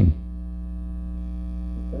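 Steady electrical mains hum on the recording, a low buzz with many evenly spaced overtones that holds level throughout.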